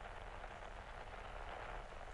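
Faint, steady hiss of static noise as the song's music has died away.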